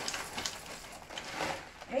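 Dry fusilli pasta poured from a plastic bag into a pot of sauce: a run of many small clicks as the pieces tumble in, stopping just before the end.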